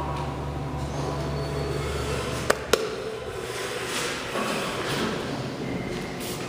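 Elevator machinery: a steady low hum cuts off about two and a half seconds in, with two sharp clicks close together as it stops, followed by a fainter rumble.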